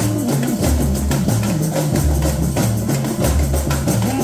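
Samba school percussion band (bateria) playing a samba-enredo live: deep surdo bass drums and sharper percussion strokes keep a steady driving beat, with a melody over it.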